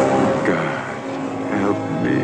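Sustained orchestral film score with a brief wordless vocal cry or two over it.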